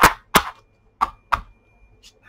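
A deck of tarot cards being shuffled by hand: four sharp card snaps, in two pairs about a second apart.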